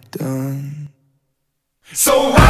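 A man's lone, breathy held vocal note from the song's ending, with no instruments under it, lasting under a second; then about a second of dead silence, and loud music cuts in at the very end.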